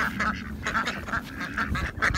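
A small flock of Rouen ducks quacking, a rapid run of short, soft quacks overlapping one another.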